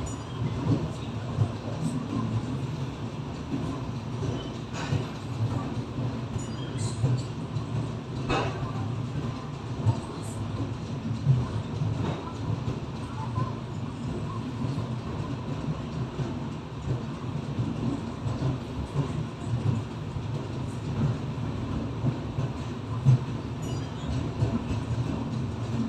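Passenger train coach rolling slowly out of a station, heard from the open doorway: a steady low rumble with a few sharp clacks as the wheels pass over rail joints.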